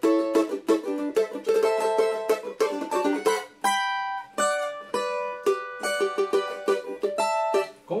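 Cavaquinho played solo: a quick, syncopated phrase of strummed and plucked chords on steel strings with sharp attacks, a few chords left ringing for a moment around the middle. It is built on D, A minor and D7 chords.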